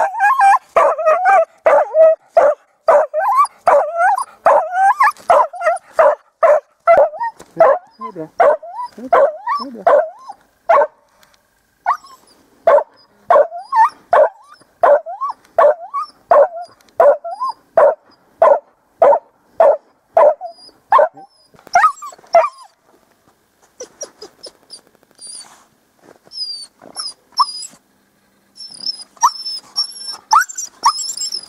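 Hunting dog barking repeatedly at a den where quarry has gone to ground: fast barks of about two a second, then a steadier, slower run. The barking grows fainter and sparser near the end, with short high squeaks.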